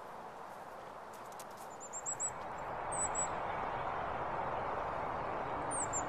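Steady outdoor background noise that grows louder a couple of seconds in, with small-bird chirps over it: a quick run of about five short high notes about two seconds in, a couple more near three seconds, and one falling note near the end.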